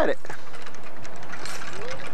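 Child's bicycle with training wheels rolling along a concrete sidewalk: faint light rattles and clicks over a steady hiss.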